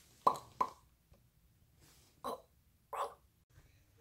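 Four brief, soft vocal sounds from a person, in two pairs: two close together near the start and two more about two seconds later.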